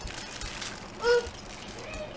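Plastic shopping bag rustling and crinkling as children's rubber rain boots are handled on a counter, with a short vocal sound about a second in.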